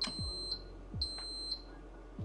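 High-pitched electronic beeps from a bread machine's buzzer: two beeps about half a second long, one a second apart.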